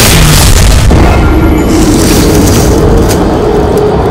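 A loud boom sound effect that rumbles on without a break, with music underneath; steady held tones join it about a second in.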